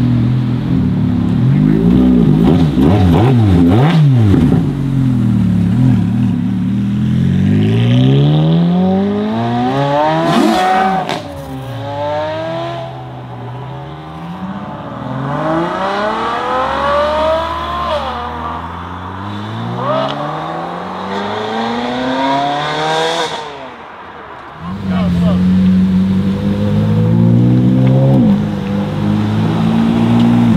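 Ferrari sports cars accelerating hard one after another, each engine note climbing in pitch through the gears and dropping back briefly at each upshift. The sound fades for a stretch in the middle, then a louder engine takes over near the end.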